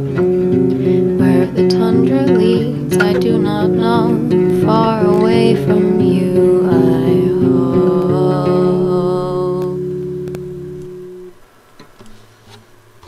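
Indie folk song ending: acoustic guitar strumming chords, then the last chord rings out and fades away near the end.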